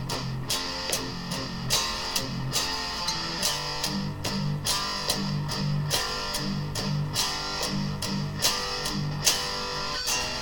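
Electric guitar played through an amplifier: a steady run of single picked notes, about four a second, mostly low notes.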